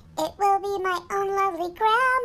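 A high, child-like voice singing unaccompanied, a run of held notes that steps up in pitch near the end.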